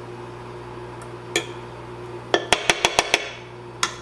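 A utensil clinking and knocking against an enamelled pot: a single knock, then a quick run of about six clinks, then one more near the end, over a low steady hum.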